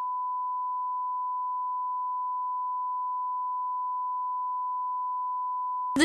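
A single steady electronic sine tone at about 1 kHz, a pure test-tone beep, replaces all other sound. It starts and cuts off abruptly. Over a close-up of lips, it stands in for the hearing of a deaf character who reads lips.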